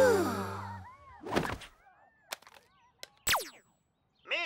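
Cartoon sound effects: a music sting sliding down in pitch and fading out in the first second, then a short breathy sigh, and near the end a quick falling whistle swoop.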